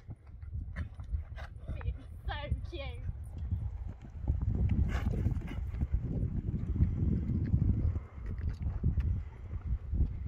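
A horse's hooves on a sand arena as it canters, dull thudding hoofbeats that grow louder from about four seconds in.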